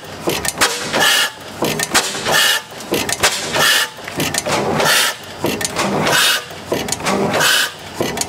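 1910 National Gas Engine S45, a large single-cylinder horizontal stationary gas engine, running slowly. It gives a loud, regular beat about every second and a quarter, with mechanical clatter between the beats.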